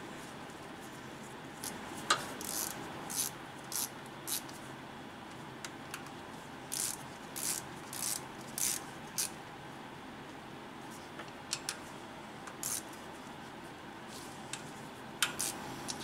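Hand ratchet clicking in short bursts, a few strokes at a time with pauses between, as small bolts on the power steering pump's hose fitting are snugged to a low torque.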